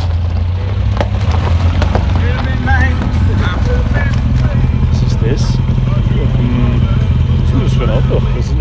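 A car engine idling with a steady low rumble, under background voices.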